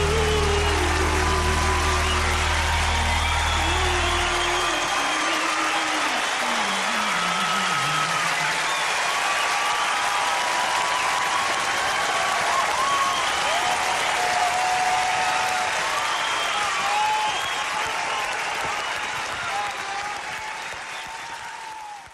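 Studio audience applauding and cheering after a live song. The band's last sustained chord dies away over the first four seconds or so. The applause fades out near the end.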